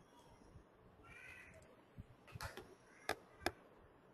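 Faint computer mouse clicks: a few sharp clicks in the second half, the loudest two about a third of a second apart, as the table is scrolled sideways. About a second in there is a brief faint pitched sound.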